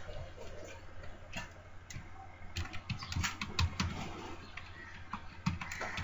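Computer keyboard typing: irregular key clicks in short runs as a password is entered, over a low steady hum.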